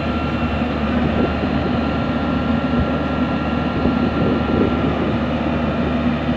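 Yanmar YH850 combine harvester's diesel engine running steadily, a constant loud drone with a thin, steady high whine over it that fades out about five seconds in.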